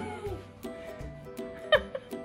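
Background music with a steady pattern of notes, and about three-quarters of the way through a single short, high-pitched squeal from a small child.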